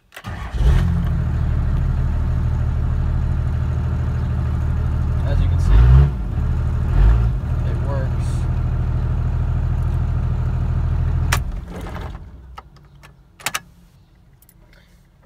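Cummins turbo-diesel inline-six in a pickup starting, heard from inside the cab: it catches within about half a second and idles steadily at around 570 rpm. It is blipped twice, about six and seven seconds in, then shut off near the end and runs down.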